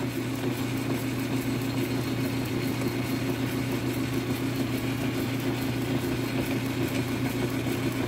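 Metal lathe running with no cut being taken, its chuck spinning: a steady, even hum from the motor and drive.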